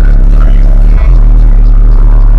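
Car-audio subwoofers playing bass-heavy music at extreme volume, a deep, continuous low bass that overloads the recording.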